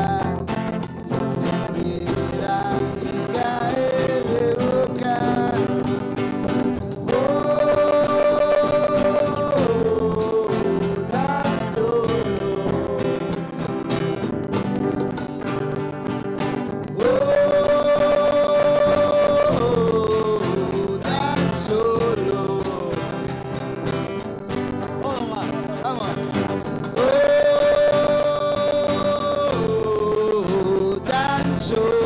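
Live band playing an instrumental passage on strummed acoustic guitars with accordion and electric guitar. A long held melody note returns about every ten seconds.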